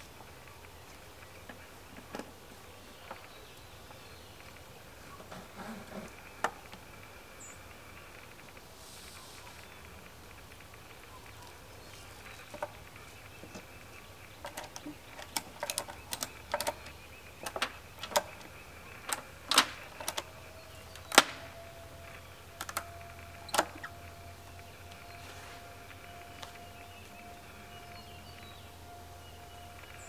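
Ratchet strap being tightened around a wooden swarm-trap box: a run of sharp, irregular clicks from the ratchet over about ten seconds in the middle, after a few scattered clicks and handling sounds.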